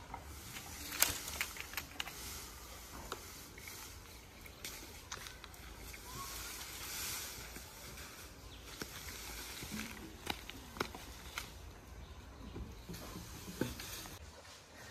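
Faint rustling and scattered crackles of a nylon drag net being hauled in over dry leaves, with footsteps on the leaf litter, over a soft steady hiss.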